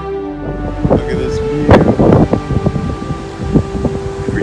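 Wind buffeting the microphone in loud, irregular gusts with thumps, loudest about two seconds in, just after background music ends.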